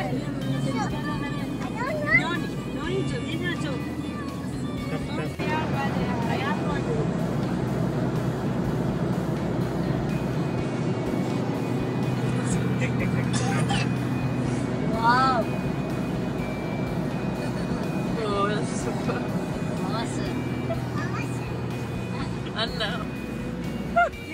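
Steady road and engine noise inside a car cabin at highway speed, with music playing and short bits of voice over it.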